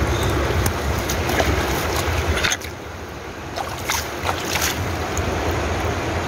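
Stream water splashing and sloshing as a rock is wetted down, over a steady rush of water and wind on the microphone; the rush drops about halfway through, followed by a few short splashes.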